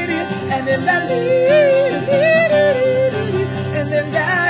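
A man singing long, wavering notes over a strummed acoustic guitar.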